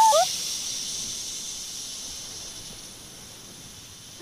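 A soft high hiss that fades away slowly, left after a short held note and a brief rising squeak cut off at the very start.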